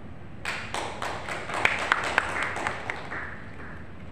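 A small audience clapping briefly: scattered, uneven hand claps that start about half a second in and die away after about three seconds.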